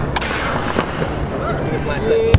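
BMX bike tyres rolling across a concrete skatepark toward a plywood kicker ramp, a steady rolling rumble under people talking around it.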